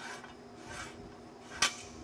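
Vinyl mull cover sliding along a window's mull bar: plastic rubbing on plastic in short strokes, with one sharp click about one and a half seconds in.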